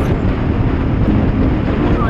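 Royal Enfield Classic 500 single-cylinder engine running steadily at highway speed, heard under a heavy rush of wind.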